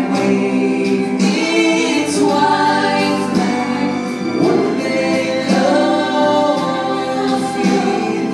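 A man and a teenage boy singing a Christian song together into handheld microphones, holding long notes.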